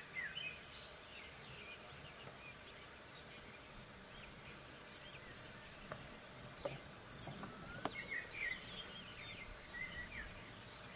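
Faint, steady high-pitched trill of insects such as crickets, with short bird chirps at the start and again near the end. There are a few faint clicks partway through.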